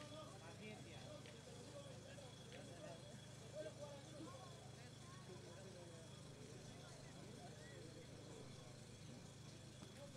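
Near silence: faint murmur of spectators' voices over a low steady hum, with a brief slightly louder moment about three and a half seconds in.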